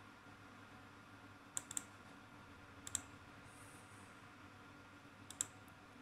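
Computer mouse button clicks: three pairs of short clicks, about one and a half, three and five and a half seconds in, over faint room tone.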